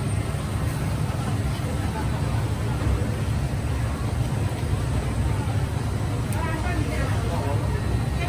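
Steady low hum of a hawker-stall kitchen, with faint voices in the background.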